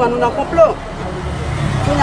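A woman's voice for about the first half-second, then a steady low rumble of road traffic that grows through the rest.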